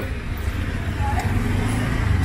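Steady low rumble of a busy, crowded alley's background noise, with faint voices in the distance.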